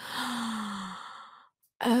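A woman's long, breathy sigh, its faint voiced tone falling slightly, lasting about a second and a half: a sigh of exasperation at realizing her own mistake. Speech starts again near the end.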